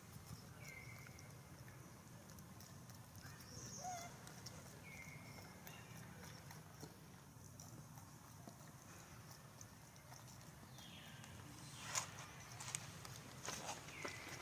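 Faint outdoor ambience with a steady low rumble and a few short, high, falling chirps spaced seconds apart. About twelve seconds in comes a run of sharp clicks and taps.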